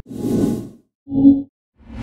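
Editing sound effects over a video transition: a whoosh, a short pitched pop a little past one second in, then a second whoosh near the end.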